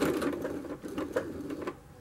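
Electric sewing machine running slowly in reverse, back-stitching a few stitches to anchor a fabric tab, with the needle mechanism clicking; it stops shortly before the end.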